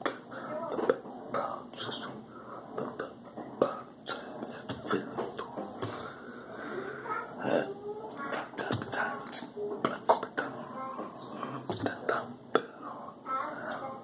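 Hands striking and brushing against each other while signing, making sharp clicks and slaps at irregular intervals. Soft non-word vocal sounds and breaths from the signer's mouth run in between.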